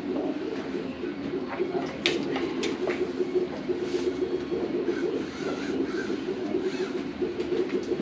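The small electric drive motors of a TI-Innovator Rover robot car running, a steady low fluttering hum, with a few light handling clicks about two seconds in.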